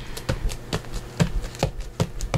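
Gloved hands pressing and patting a sheet of paper down onto wet paper on a tabletop: a string of short, soft taps, a few a second.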